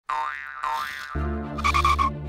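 Two wobbling cartoon 'boing' sound effects, one after the other, then a low sustained music chord comes in just over a second in, with a quick warbling flourish near the end.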